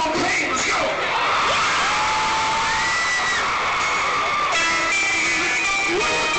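Rock concert crowd cheering and shouting between songs, with long held whoops. About four and a half seconds in, an electric guitar starts playing through the PA over the crowd.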